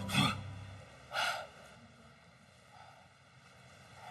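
A man's breathing: two short gasps about a second apart, from a boxer knocked down on the canvas and catching his breath.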